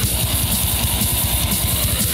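Black metal recording: heavily distorted electric guitars over rapid, relentless kick drumming, with a dense hiss-like wash of cymbals on top.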